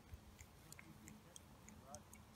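Near silence with faint scattered small clicks: handling noise of a phone held right against a hand holding a fish.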